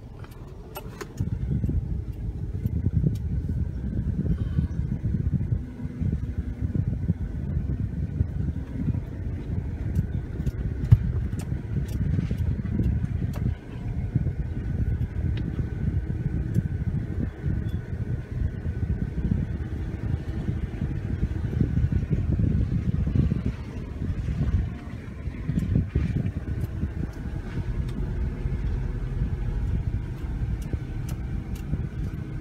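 Cabin sound of a Toyota Prado crawling along a rough dirt track in low-range first gear: a steady low rumble of engine and tyres, with scattered clicks and knocks, and a few brief lulls.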